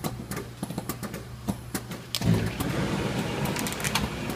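Automated agitated immersion parts washer running with a steady low hum and a few sharp clicks; about two seconds in, a louder steady rushing noise starts up, like a pump or blower coming on for the next stage.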